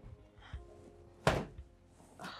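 Soft background music, with one loud thump a little over a second in.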